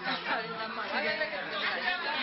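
Many people talking at once in a room: overlapping chatter of several voices, no single speaker standing out.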